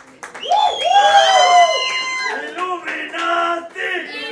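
A man's voice holding one long, high, sung note that falls slightly at the end, followed by a few shorter vocal sounds.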